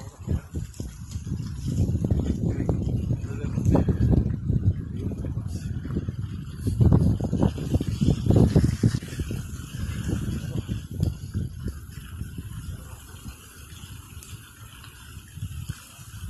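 Wind buffeting the microphone in uneven gusts, strongest about four and eight seconds in and easing near the end.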